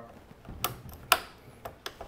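Quick-connect hose fitting being pushed onto the cut-off saw's water inlet fitting: four sharp clicks, the loudest about a second in, as it snaps and locks into place.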